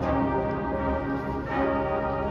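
Marching band playing slow, held chords, changing to a new chord about a second and a half in.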